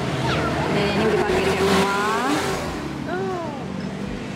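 Wordless voice sounds, with the pitch sliding up and down and one tone held for about two seconds, over a steady low hum.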